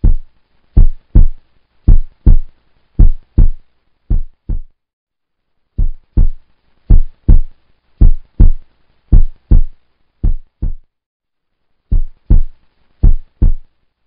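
Heartbeat sound effect: loud double thumps, lub-dub, about one pair a second, pausing briefly twice.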